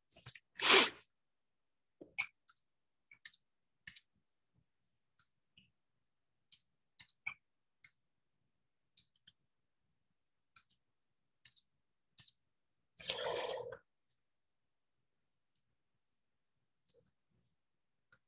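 Sparse, scattered small clicks and taps, with two short louder rushes of noise: one about half a second in and one about 13 seconds in.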